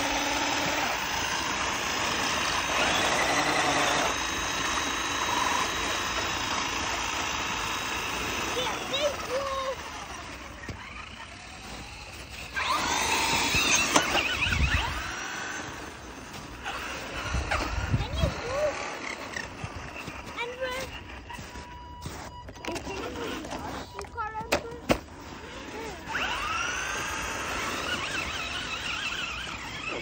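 Electric motors of radio-controlled monster trucks whining. The pitch holds steady at first, then rises and falls repeatedly as the throttle is worked and the trucks spin through snow. A few low thuds come in the middle.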